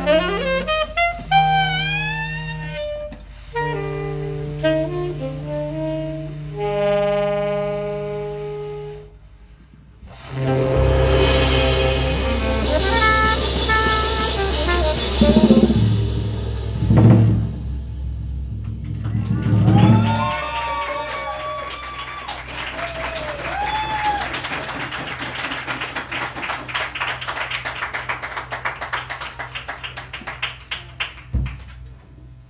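A small jazz group playing live: tenor saxophone lines with slides and held notes over electric bass and a drum kit. The music drops nearly out for about a second near the middle, then the full band comes back in. Steady cymbal strokes keep time through the last part.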